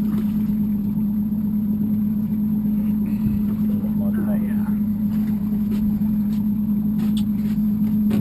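Evinrude 150 outboard motor idling: a steady low hum at an even level throughout.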